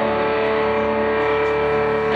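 Live guitar music: one chord held and ringing on long, steady notes, with a lower note dropping out partway through.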